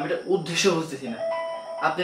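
A short electronic chime of two steady tones, about a second in, between stretches of a man's speech.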